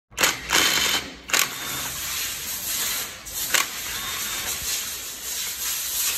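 Cordless impact wrench hammering as it undoes a bolt inside a transmission housing, in several short bursts near the start, then running more steadily.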